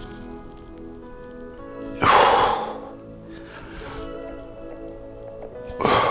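Background music with steady held tones, over which a man exhales forcefully through his nose and mouth twice, about two seconds in and again at the end, with the effort of a heavy dumbbell shrug.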